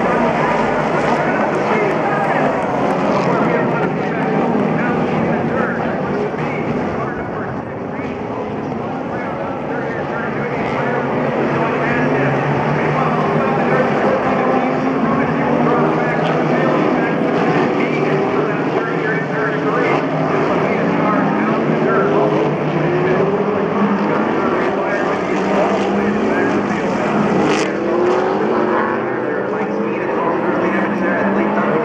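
A field of World Challenge race cars accelerating away at the race start, many engines revving and shifting up together in overlapping rising sweeps. The sound dips slightly around eight seconds in and then builds again.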